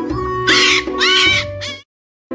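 Background music with two high, wavering puppy cries, each about a third of a second long and half a second apart; the sound cuts off shortly before the end.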